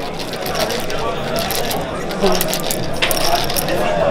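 Smarties sweets rattling out of a tube into cupped hands: a rapid, uneven run of small hard clicks, with voices chattering in the background.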